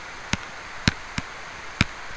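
Four sharp clicks of a stylus tapping down on a tablet screen while digits are handwritten, over a steady hiss.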